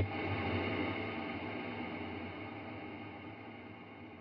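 Electric guitar chord struck once through a Strymon BigSky reverb pedal on a heavy, super washed-out Cloud reverb setting. The chord rings on as a dense wash that slowly fades.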